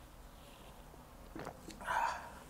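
A man downing a shot of vodka: quiet for over a second, then a faint sound and a short, loud breath out near the end as the shot goes down.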